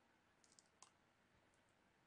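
Near silence, broken by a few faint computer-mouse clicks: three close together about half a second in and one more just before a second in.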